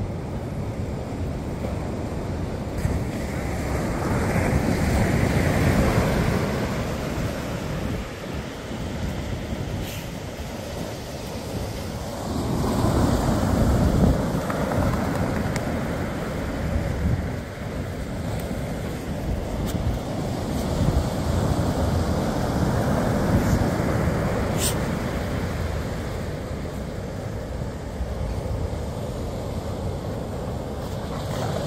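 Ocean surf breaking and washing on a beach, swelling and fading in slow surges, with wind buffeting the microphone.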